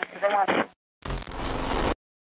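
A voice clip that sounds thin, like a radio or phone recording, ends; about a second in, an editing transition effect sounds: a rough burst of noise spanning all pitches, with a thump at its onset, lasting just under a second and cutting off suddenly.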